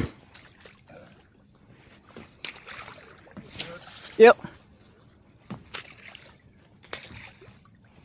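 Water splashing and sloshing in shallow water, with a few light knocks scattered through.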